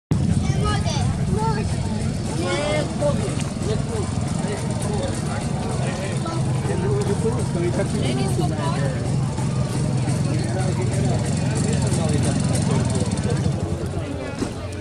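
A vehicle engine idling with a steady low hum, under the chatter of a crowd of people.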